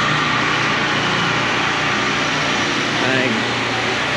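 Steady street ambience: a constant hum and hiss with faint voices in the background, a few becoming clearer near the end.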